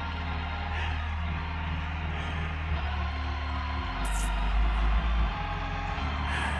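Live band music playing under a pause in the preaching: sustained keyboard chords over deep held bass notes, the bass dropping lower for about a second and a half partway through.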